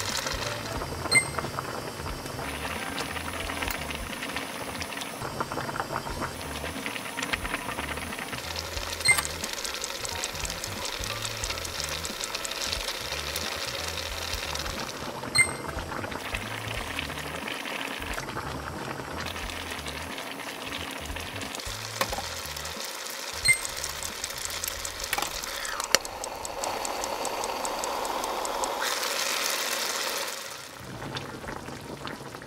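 Background music over the bubbling of a pot of braised beef short ribs boiling hard on high heat, with a few sharp clicks along the way.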